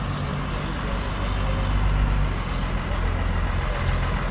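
Engine of a lowered custom semi-truck rolling slowly closer, a steady low rumble that grows a little louder.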